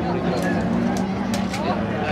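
Folkrace car engines running steadily out of sight on the track, mixed with voices.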